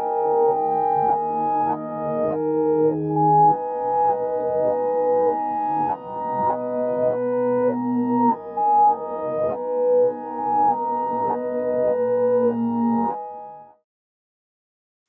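A piano sample loop played in reverse. Each chord swells up and then cuts off abruptly, which gives the sucked-in, backwards sound of a reversed piano. Playback stops just before the end.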